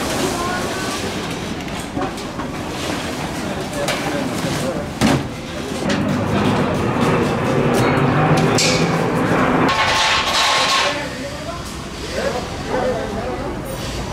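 Street stall frames of steel tubing being taken down, with people's voices throughout; a single sharp knock comes about five seconds in, and the sound grows louder and denser through the second half.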